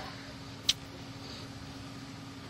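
A steady low hum with one short, sharp click less than a second in.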